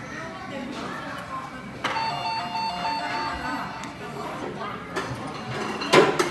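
A short electronic jingle of simple beeping notes plays from about two to three and a half seconds in, over background voices.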